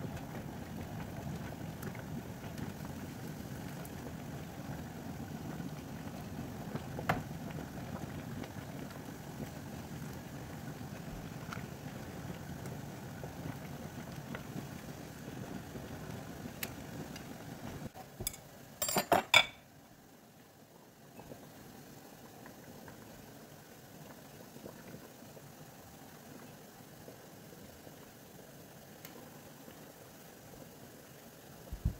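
Water in a canning pot bubbling steadily at a boil, with an odd click. About eighteen seconds in comes a quick cluster of loud clinks and knocks from glass canning jars and the metal jar lifter. After that the sound drops to a faint steady background.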